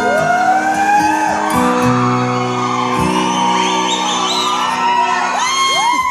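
Acoustic guitar strumming a slow intro, chords re-struck about every second and a half and left ringing, while audience members whoop and shout over it in a large, echoing hall.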